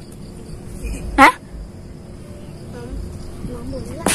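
Insects chirring steadily in the background, with a short spoken 'Hah?' about a second in and faint voices toward the end.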